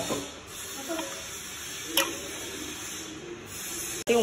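A steel ladle mixing curd into thick pearl millet porridge (kambu koozh) in a steel vessel: a wet, steady hiss of stirring, with a single clink of the ladle against the steel about two seconds in.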